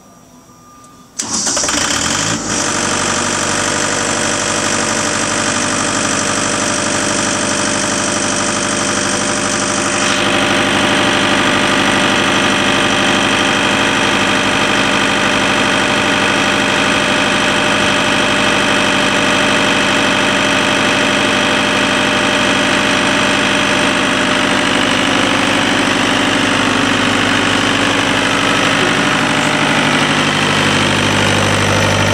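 Diesel engine of a Magnum trailer-mounted water pump starting up about a second in, then running steadily. A high hiss over the engine sound cuts off about ten seconds in.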